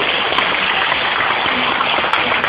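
Steady hiss of a noisy recording, with no speech over it.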